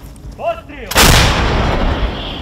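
A short shouted call, then about a second in a towed M777 155 mm howitzer fires: one very loud blast that rings and rolls away slowly.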